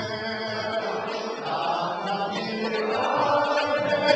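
A group of voices chanting together in a devotional kirtan, singing sustained notes over a steady beat of light clicks.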